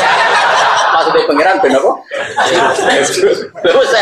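Laughter and chuckling mixed with a man's speaking voice, densest in the first two seconds.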